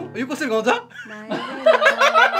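A man and a woman laughing and chuckling, with a few words between, right after an acoustic guitar stops.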